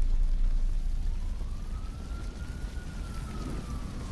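Large fire burning, a steady noisy roar and crackle that slowly grows quieter. A faint distant siren wails once, rising about a second in, then falling slowly toward the end.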